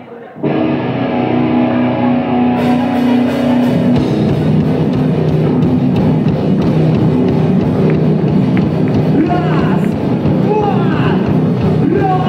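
Live rock band starting a heavy song: distorted electric guitar chords ring out about half a second in, the drums and cymbals join a couple of seconds later, and the full band plays loud and dense from about four seconds on, with a voice coming in near the end.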